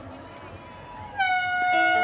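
Faint crowd hubbub, then about a second in an air horn blows one long steady blast: the signal starting the race. Music begins underneath it near the end.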